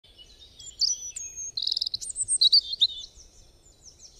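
Birds singing: a run of short, high chirps and whistles with a fast trill about a second and a half in, fading out near the end.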